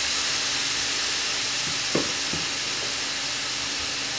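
Pork pieces frying in oil in a stainless steel frying pan, on a hob just turned down to a low setting: a steady sizzling hiss that eases slightly, as a wooden spatula stirs the meat, with a couple of faint knocks about two seconds in.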